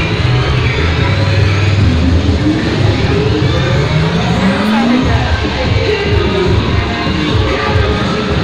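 Loud dance-mix music for a cheerdance routine, with heavy bass and several rising sweeps in the middle.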